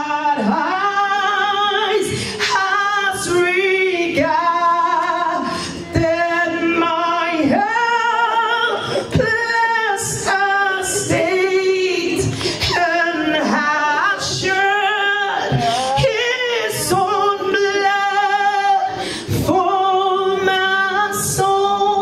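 A woman singing into a handheld microphone, a melody of held notes in phrases that pause briefly every second or two.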